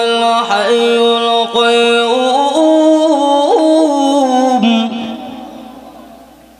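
A man chanting 'Allah' in long, drawn-out melodic notes through a microphone and loudspeakers, the pitch stepping up about two seconds in. The voice stops about five seconds in and an echo fades after it.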